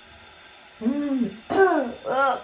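A woman's pained vocal cries at a mouthful of spicy food: after about a second of quiet, two short moans that rise and fall in pitch, an 'ah' and then a whimpering 'uuu', the second louder. She is reacting to the heat: it is too spicy for her.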